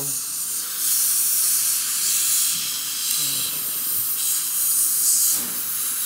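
Steady high-pitched hiss that swells and eases a couple of times, with faint voices behind it.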